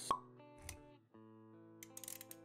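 Intro sound design over sustained music: a sharp pop sound effect right at the start and a soft low thud a little over half a second in. The music drops out briefly about a second in, then sustained chords carry on.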